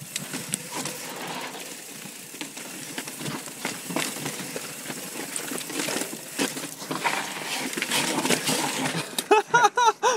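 Yeti SB4.5 mountain bike ridden slowly over rough sandstone: a haze of tyre and wind noise with frequent clicks, knocks and rattles as it drops over rock steps. A man laughs near the end.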